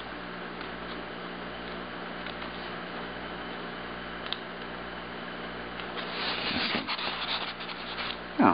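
Fingers rubbing and scraping on a styrofoam block as it is handled, a scratchy rubbing about six seconds in, over a steady low hum.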